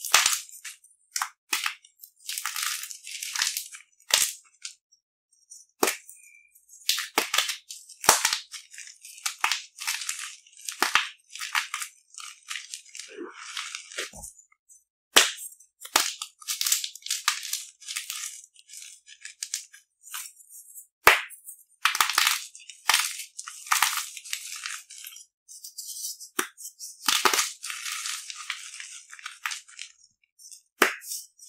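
Soft dyed chalk cubes crushed by hand: sharp snaps as blocks break, then gritty crumbling and trickling fragments, in irregular bursts with short pauses between squeezes.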